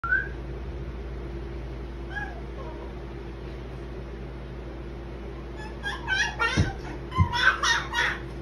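Baby babbling and squealing in short high-pitched bursts, one brief squeak at the start and a quick run of them in the last two seconds, over a steady low room hum.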